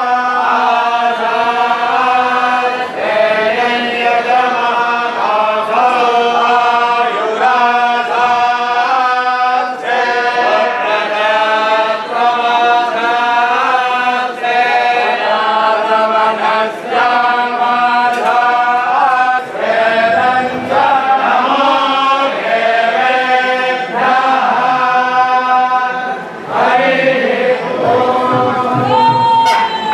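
A large group of male temple chanters reciting in unison, a melodic chant sung in phrases with brief pauses for breath every couple of seconds.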